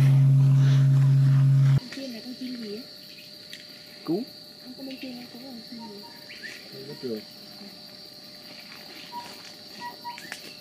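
A large bronze bell's steady low hum for the first two seconds, cut off suddenly; then a steady high-pitched insect drone in the forest, with faint distant voices and a few short bird notes.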